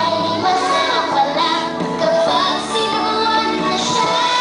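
A group of young children singing together over music, a song with clear held notes.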